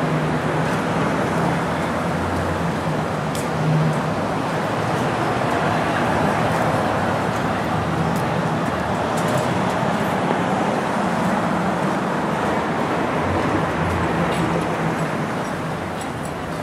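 Street traffic: cars and a pickup truck driving slowly along a city street, a steady rush of engine and tyre noise with a low engine hum that comes and goes.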